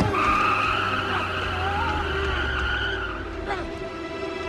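Car tyres squealing in a hard skid over the engine's low rumble. The squeal lasts about three seconds and then fades.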